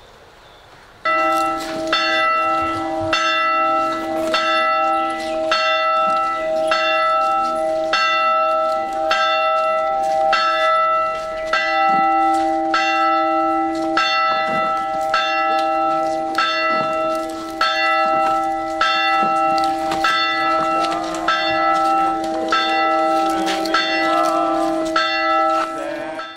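Church bell ringing in a steady, even rhythm, about three strikes every two seconds, starting about a second in, with a long hum ringing on between strikes.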